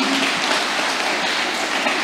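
Congregation applauding, a steady round of clapping.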